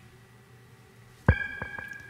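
Synthesizer notes from the Akai MPC X's plugin instrument start suddenly a little past halfway: a fast, even run of short, choppy notes over a held high tone. Before that it is nearly quiet.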